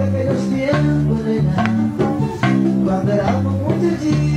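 Live bachata band playing: guitars and bass over a steady percussion beat.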